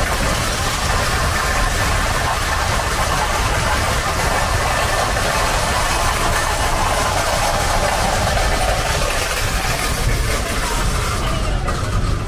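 Loud, steady engine noise with a strong hiss over it. It cuts off abruptly near the end.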